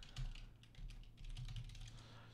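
Faint, quick run of keystrokes on a computer keyboard as a short word is typed.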